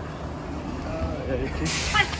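Low steady rumble of an idling truck engine under faint talk, then a short, sharp hiss of released air about a second and a half in.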